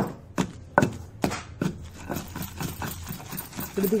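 Pestle pounding cucumber chutney in a granite stone mortar: dull knocks about every 0.4 seconds for the first second and a half, then softer, lighter strokes.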